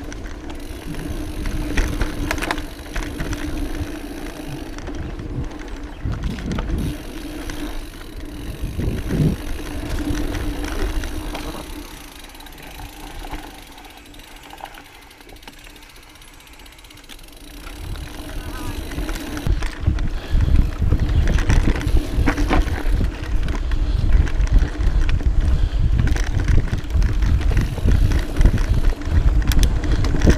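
Mountain bike riding down a dirt singletrack trail: tyres on dirt, the bike rattling over roots and bumps, and wind rumbling on the camera microphone. It eases off for a few seconds about midway, then grows louder and rougher for the last third.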